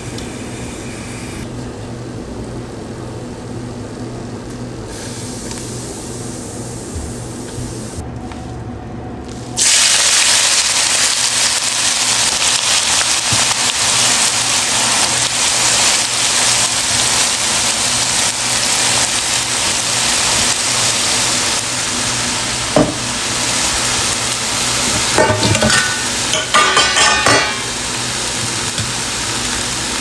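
Spices frying in hot oil in a non-stick wok with a gentle sizzle. About ten seconds in, the sizzle jumps suddenly to a loud, dense frying noise as shredded mushrooms hit the oil, and it carries on steadily while they are stirred. A sharp knock comes near the end, followed by brief scraping.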